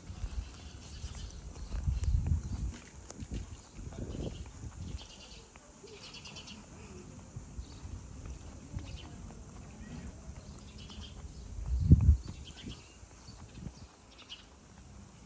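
Short bursts of high chirping from birds in the roadside trees, with low rumbling thumps on the microphone, loudest about two seconds in and again near the end.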